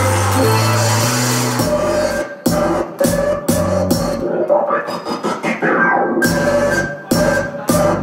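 Live electronic music: a dense beat over a stepping bass line that, about two seconds in, breaks into chopped, stuttering fragments with sudden cut-outs, a held tone and short pitch glides.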